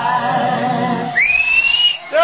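Music tails off in the first half. About a second in, a shrill whistle slides up in pitch and holds for most of a second, the kind of whistle a listener in a live crowd gives as a song ends.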